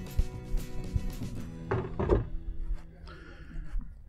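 Quiet background music with steady held tones, with a few light knocks as tools are handled on a wooden workbench.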